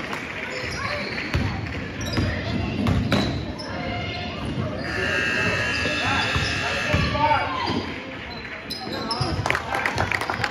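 A basketball bouncing on a hardwood gym floor during play, with voices calling out, all echoing in the large gym. A quicker run of bounces comes near the end.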